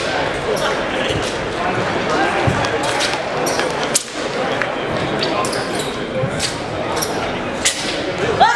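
Sharp slaps and thuds from a wushu routine on a competition carpet: foot stamps and body slaps landing at irregular intervals, several in the second half, over steady background chatter in a large gym.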